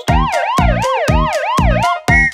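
Cartoon police-car siren sound effect wailing up and down quickly, a little under three cycles a second, over the song's backing drum beat.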